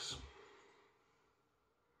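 A brief click and hiss at the very start, fading within about half a second, then near silence: room tone.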